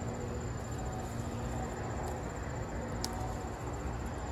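Insects chirping steadily in a fast, even, high-pitched pulse, over a low rumble on the microphone, with one faint click about three seconds in.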